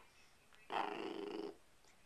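Corgi puppy giving one drawn-out growling grumble, under a second long, about midway through.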